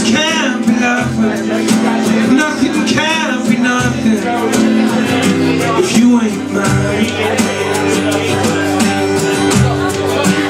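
Acoustic guitar strummed steadily while a man sings into a microphone, heard live in the room.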